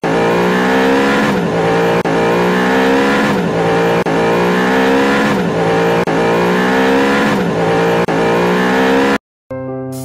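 A looped car engine sound, its pitch sweeping and the same pattern repeating every two seconds, cutting off suddenly shortly before the end.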